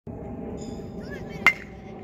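Baseball bat hitting a pitched ball about one and a half seconds in: a single sharp ping with a short ring.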